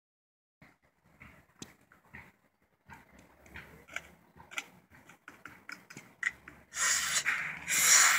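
Sucking hard through a plastic straw on a frozen Slurpee: a string of short, faint pulls that come more and more often, then a longer, louder hissing suck near the end.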